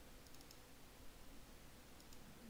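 Near silence: room tone with a few faint computer mouse clicks about a quarter to half a second in.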